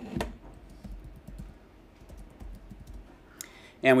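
Computer keyboard typing: a run of light key clicks as a search word is typed in, with one louder click just after the start.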